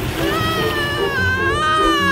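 A long, drawn-out high-pitched yell from a cartoon character, held for nearly two seconds with small wobbles in pitch, over background music.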